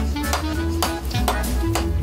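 Sledgehammer blows on red-hot iron on an anvil during hand forging: several sharp metallic strikes in quick succession, each with a short ring. Background music plays underneath.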